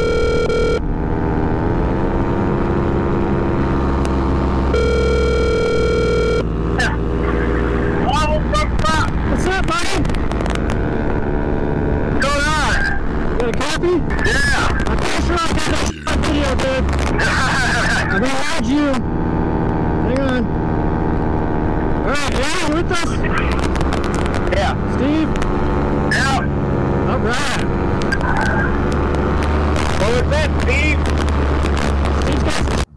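Paramotor engine running steadily in flight, heard from the pilot's seat. A steady electronic beep tone sounds briefly at the start and again for about a second and a half around five seconds in. Voices over the helmet intercom come in over the engine later on.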